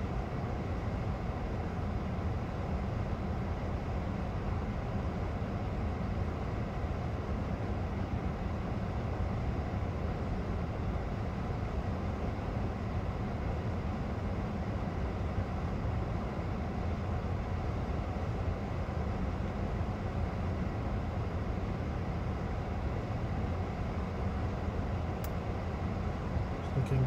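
Steady low engine rumble of idling vehicles heard from inside a stopped car's cabin, with a single faint click near the end.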